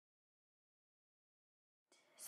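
Digital silence: the audio is blank.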